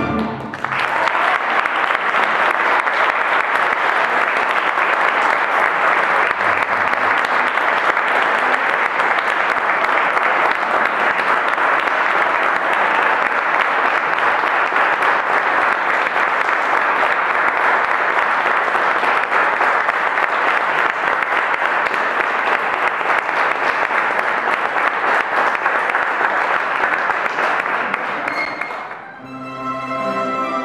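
Audience applauding steadily for nearly half a minute. It starts as the orchestra's music stops and dies away just before the plucked-string orchestra starts playing again near the end.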